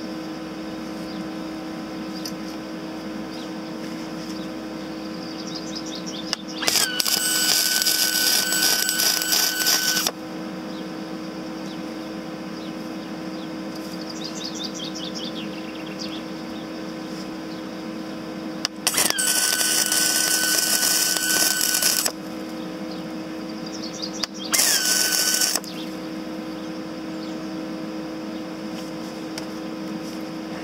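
Wire-feed (MIG) welder running three welds on car-body sheet metal: three bursts of arc crackle, the first two about three seconds each and the last about one second. A steady hum runs underneath.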